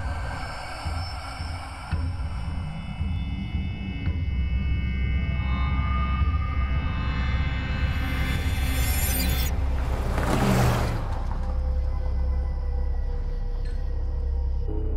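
Dark, suspenseful horror score: a low rumbling drone under held tones, with a rising swell that breaks into a short, loud burst of noise about ten seconds in.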